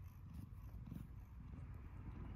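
Domestic cat purring, a faint, steady low rumble: the cat is content.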